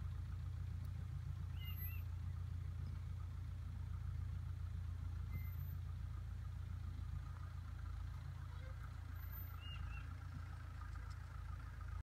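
Low, steady engine drone of the vehicle towing a trailer loaded with wheat straw as it drives away across the field, easing off slightly in the second half.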